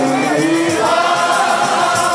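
Group of men singing a qasida together through microphones, holding and gliding between long sung notes in maqam Siqa.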